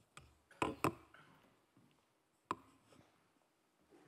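Knocks and bumps of handling at a wooden lectern fitted with a microphone: two close knocks just over half a second in, a single sharp knock at about two and a half seconds, and faint rustling in between.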